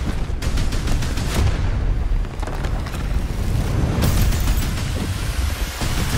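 Film explosion sound effects: a heavy continuous rumble with repeated sharp blasts and flying debris, the strongest hit about four seconds in.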